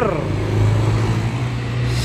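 Diesel engine of a Sinar Jaya intercity bus running as the bus drives away, a steady low drone.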